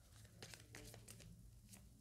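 Faint rustling and a few soft clicks of paper cards being handled, over a low steady hum.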